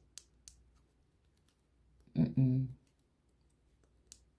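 A few faint, sharp clicks in the first half second, then a short murmured vocalization from a woman about two seconds in.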